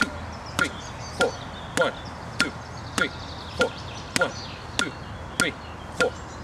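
Boxing gloves smacking into focus mitts in alternating jabs and crosses, struck in time with a metronome's clicks at 100 beats per minute: a steady run of sharp hits about every 0.6 seconds, ten in all.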